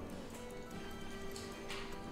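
Soft background music with a few held notes, and a few faint light clicks.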